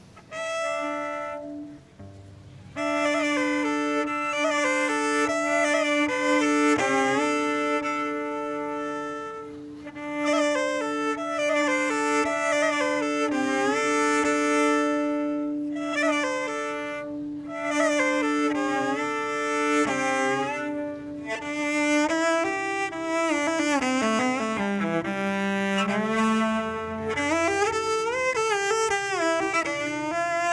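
Solo cello bowed, starting with a short note and a brief pause, then a long held low note under a moving melody. From a little past the middle, lower notes with a wide, wavering vibrato.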